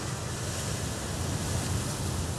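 A steady rushing wash of noise, with no clear notes in it, within an album track.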